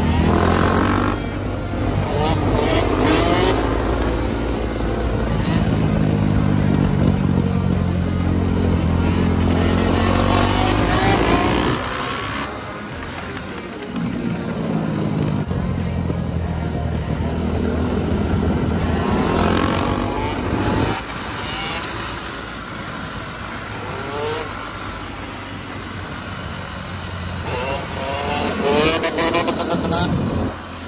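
Yamaha YZ two-stroke dirt bike engine revving up and down repeatedly while it is held in wheelies, its pitch rising and falling with the throttle. It is louder in the first part and quieter in stretches later on as the bike moves farther away.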